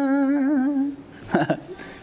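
A man singing a Hindi song unaccompanied holds a long final note that breaks into vibrato and fades out about a second in. A moment later come a few brief vocal sounds.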